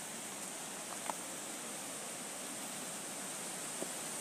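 Steady rushing hiss of falling and flowing water from a waterfall and river, with two faint ticks, one about a second in and one near the end.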